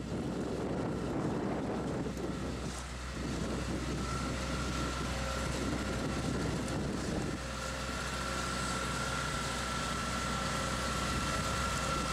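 A motor running steadily, a low hum with a faint high whine held over it, with some wind noise on the microphone.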